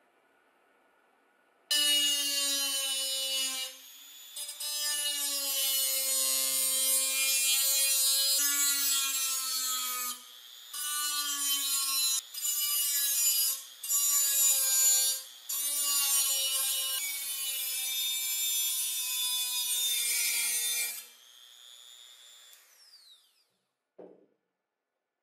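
Handheld rotary tool with a small abrasive cut-off disc cutting a slot into the steel lid of a tin can: a high motor whine with a grinding hiss, starting about two seconds in and broken by several brief pauses as the disc lifts off the metal. Near the end the cut stops and the motor whine falls in pitch as the tool spins down.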